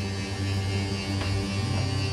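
Travel trailer's electric slide-out mechanism running steadily as the slide-out room retracts, a steady hum.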